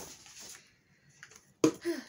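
A ring-bound paper planner being handled: a sharp click at the very start and a brief rustle of pages and plastic cover. Near the end comes a short vocal sound.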